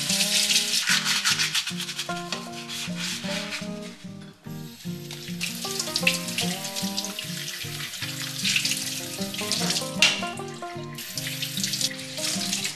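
Kitchen mixer tap running into a stainless steel sink while hands rub and rinse small items under the stream, with soft background music. The water sound dips briefly about four seconds in and again near the end.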